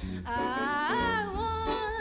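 Jazz combo playing a standard: a woman sings long held notes over guitar and bass, with a quick upward slide about halfway through.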